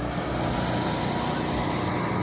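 Steady rain falling on a wet street, an even hiss.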